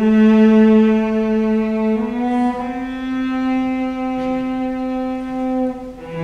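Solo cello played with the bow, holding long sustained notes: one for about two seconds, then a slightly higher one held almost to the end, where the sound briefly drops before the next note.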